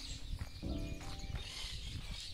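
A short pitched animal call, under half a second long, about a second in, over a quiet outdoor background.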